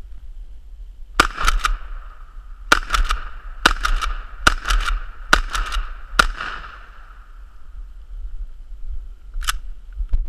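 A Mossberg 500 .410 pump-action shotgun fired about six times in quick succession, roughly a second apart, each shot followed by the quick clacks of the pump being worked, with a ringing tone lingering after the shots. A single sharp click near the end.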